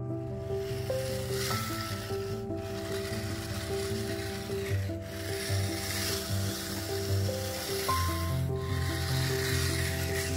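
Steel bow rake scraping and rattling through pea gravel in long strokes, with brief breaks about every two and a half to three seconds. Background music of slow, held chords plays under it.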